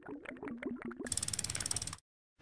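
Animated-title sound effect: a run of quick ratchet-like clicks over a low wavering tone for about a second, then a faster, brighter rattle of ticks that cuts off suddenly.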